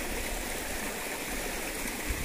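Shallow stream flowing steadily over rocks and stones.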